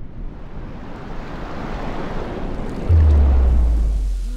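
Cinematic logo-intro sound effect: a swell of rushing noise, like wind and surf, building steadily louder, then a sudden deep boom about three seconds in that hangs on as a low rumble.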